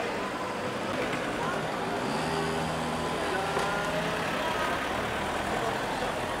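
A car engine running steadily for a few seconds in the middle, over the background murmur of bystanders' voices on the street.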